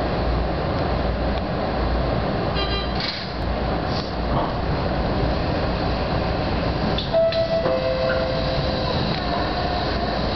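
Electric commuter train running noise heard from inside the front car as it pulls away and gathers speed: a steady rumble of wheels on rail. About seven seconds in, a held tone sounds, followed by a lower one.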